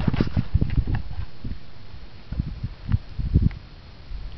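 Handling noise close to the microphone: irregular soft low thumps and rustles as a rangefinder is picked up and brought to the eye, with a short cluster of stronger knocks near the end.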